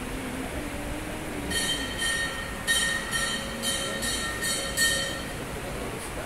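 A metal temple bell struck about eight times, roughly two strikes a second. Each strike rings with several clear metallic tones. The ringing starts about a second and a half in and stops shortly after five seconds.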